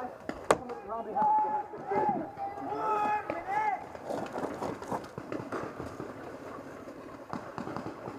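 Voices calling out in the first few seconds, then footsteps crunching and shuffling through dry fallen leaves with short rustles and knocks as a paintball player moves along a wooden wall. A single sharp crack sounds about half a second in.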